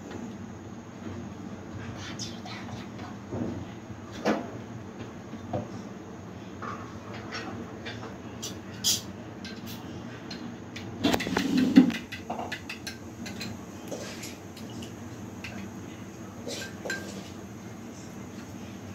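Spoon and crockery clinking, scattered knocks with a short run of rapid clinks about eleven seconds in, over a steady low background hum.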